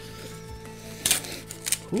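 Quiet background music with steady held notes. About a second in, and again shortly after, come short sharp crinkling noises: a foil booster pack wrapper being torn open.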